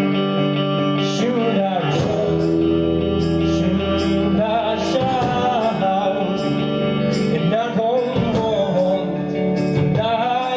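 A band playing live on electric guitar, acoustic guitar, bass and drums, with steady cymbal strokes.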